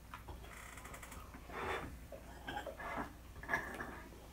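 Faint eating sounds from cheesecake eaten with forks: soft chewing and mouth sounds, a few short ones about one and a half, two and a half and three and a half seconds in, with light clicks of forks.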